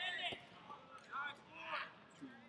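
Raised, shouting voices of coaches or onlookers at a wrestling match, in short bursts, with a single thump about a third of a second in.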